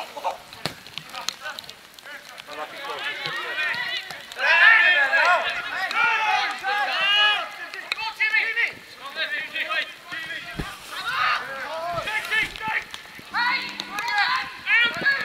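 Footballers and sideline voices shouting calls across an outdoor pitch during open play, loudest a few seconds in.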